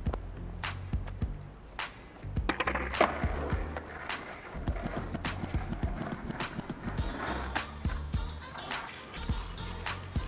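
Skateboard wheels rolling over wet asphalt, loudest a few seconds in and then fading as the board moves away, with scattered sharp clicks and knocks. Music with a steady bass beat plays underneath.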